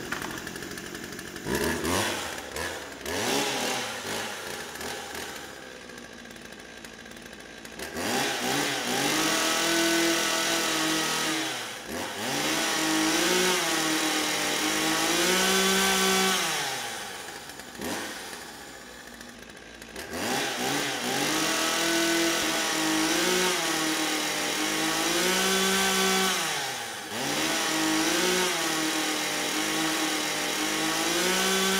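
A handheld chainsaw running, its engine revved up and down again and again. It is softer at first and much louder from about eight seconds in, with short drops in between.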